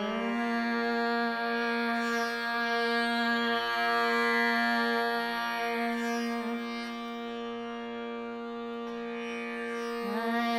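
Hindustani classical vilambit khayal in Raag Bhoopali, with voice, harmonium, tabla and tanpura drone: one long note is held steady over slow, sparse tabla strokes.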